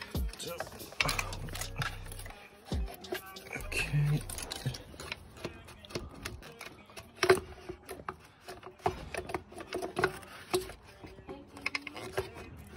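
Irregular clicks and knocks of hands and tools working hose clamps, plastic clips, hoses and wiring in a car engine bay, with one sharper knock about seven seconds in. Music plays faintly in the background.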